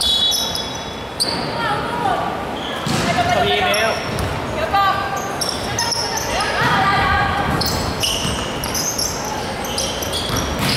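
A basketball bouncing on a hardwood gym floor during play, mixed with players' calls.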